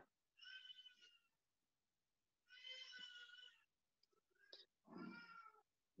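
A small child shouting: three faint, high-pitched drawn-out cries about two seconds apart.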